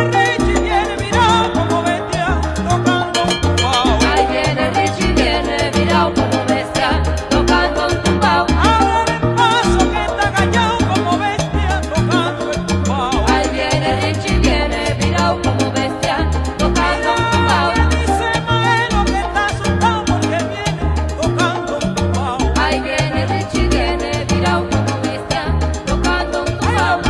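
Salsa band recording playing an instrumental passage with no singing, carried by a steady, repeating bass line.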